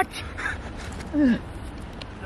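A man's short cry of pain a little over a second in, its pitch sliding steeply down, with a fainter vocal sound just before it.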